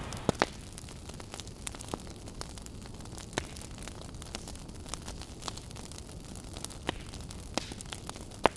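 Crackling fire: a steady hiss with irregular sharp pops and snaps scattered through it.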